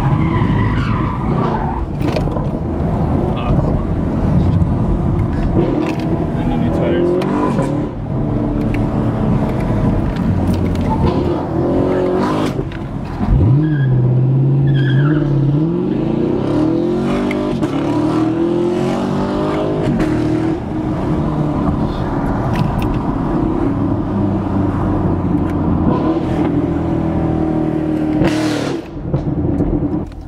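Camaro SS 6.2-litre V8 heard from inside the cabin, running under load. About thirteen seconds in the revs jump suddenly, followed by several rising sweeps in pitch as it accelerates hard.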